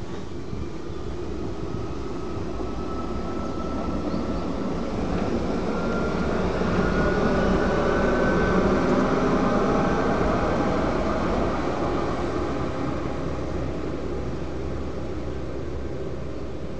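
Electric rack-railway railcar (Riggenbach cog system) passing close by: a rumble of wheels and cog drive with a whining tone that rises in pitch as it approaches, growing louder to a peak about eight seconds in, then fading away.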